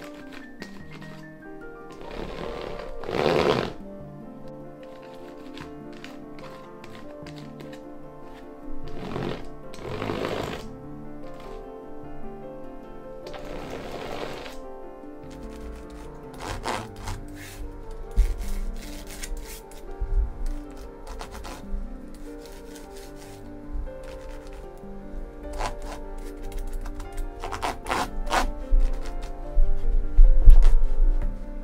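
Background music throughout, with a patterned paint roller being rolled across a canvas: three rushing passes, the loudest about three seconds in, then two more about 9 and 13 seconds in. In the second half come scattered knocks and low bumps of the canvas being handled.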